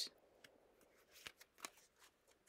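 Faint handling of tarot cards: a few soft clicks and rustles spaced through an otherwise near-silent pause.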